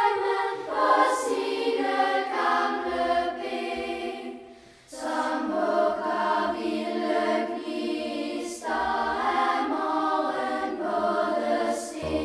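Children's choir singing in Danish. The singing drops away briefly about four and a half seconds in, then comes back fuller and lower.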